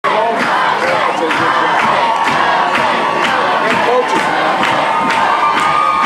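Stadium crowd of football spectators cheering and shouting with many voices at once, over a steady beat about twice a second.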